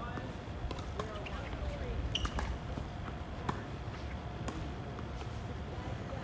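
Scattered sharp knocks of tennis balls bouncing and being struck on an outdoor hard court, with faint distant voices and a faint steady hum behind them.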